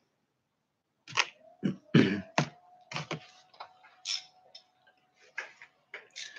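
Irregular sharp clicks and light knocks, starting about a second in, from small bicycle parts being handled: a chain guide with its screws and stacked plastic washers being fitted to a mountain bike.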